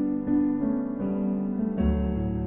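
Slow piano music of sustained notes changing every half second or so, with a deep bass note coming in near the end.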